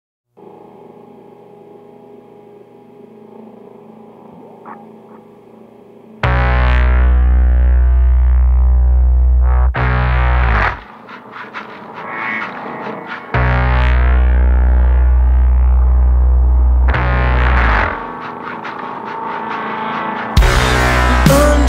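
Instrumental intro of a rock song. A quiet, effect-laden guitar drone holds for about six seconds, then loud distorted guitar and bass come in with a heavy low end, breaking off and restarting in sections before dropping to a quieter passage near the end.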